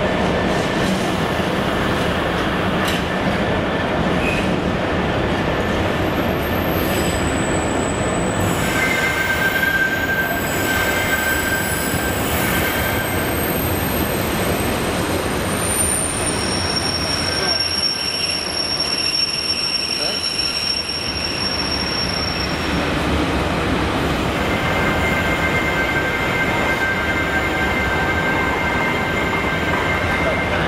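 Container freight train hauled by a Freightliner Class 66 diesel locomotive rolling steadily past, the wagons' wheels squealing on the curved track. The thin high squeals set in about eight seconds in, fade a little after twenty seconds and return near the end.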